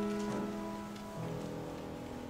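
Piano playing a slow passage: a held chord fades away, and a softer chord is struck a little over a second in.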